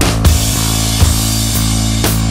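Psychedelic pop band track without singing: drum kit and bass guitar, with a cymbal crash at the start that rings on through the passage.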